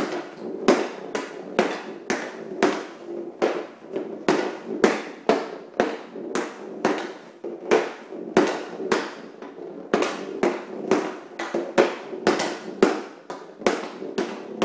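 Stickhandling on plastic dryland flooring tiles: a hockey stick blade knocks a ball from side to side and slaps the tile surface. The sharp clacks come about two to three a second, unevenly, each with a short ring.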